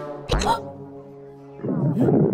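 Cartoon soundtrack: background music with held notes, a short sharp sound effect about a third of a second in, and a rough, growling cartoon voice that starts near the end.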